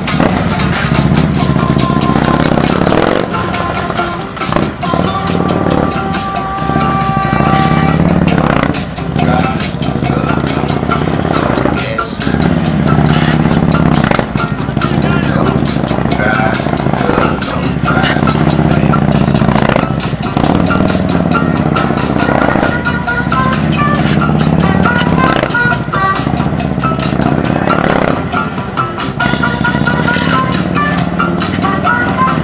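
Background music mixed with a heavy police motorcycle's engine, which swells and fades every few seconds as it is throttled through tight low-speed turns.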